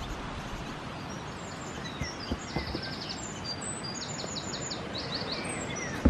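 Small birds chirping and giving quick trilling calls over a steady outdoor background hiss, with a few soft knocks around two seconds in.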